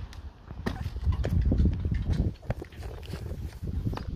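Quick irregular footsteps and shoe scuffs on cobblestone paving, sharp knocks over a steady low rumble, as a parkour runner runs up and jumps off a concrete block into a flip.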